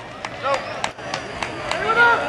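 Spectators shouting and calling out to runners in a track race, with about half a dozen sharp, irregular clicks close by. The voices grow louder near the end.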